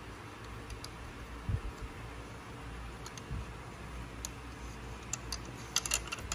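Faint, scattered metal clicks and ticks as the threaded adapter of a slap-hammer fuel injector puller is turned by hand onto the top of a fuel injector in the cylinder head, with the clicks bunching up near the end.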